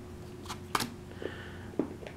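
Forbidden Island flood cards being drawn from the deck and laid down on the table: a few short, quiet snaps and slides, the sharpest about three quarters of a second in.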